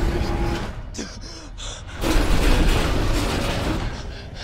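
Loud rumbling, rattling mechanical noise of a metal cage lift rising up a shaft, with a man gasping for breath. The noise drops back about a second in, then comes back loud suddenly about two seconds in.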